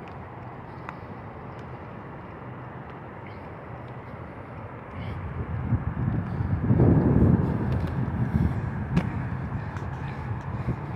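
Steady distant city traffic hum, then, about halfway through, wind gusting on the microphone: a loud, fluttering low rumble that peaks a couple of seconds later and slowly eases off.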